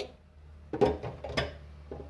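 Two short knocks with a brief ring, about half a second apart, from a silicone spatula tapped against a glass bowl or blender jar to shake off batter, over a steady low hum.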